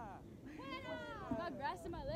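Faint voices of people calling out to each other, overlapping, with a drawn-out high-pitched call about half a second in.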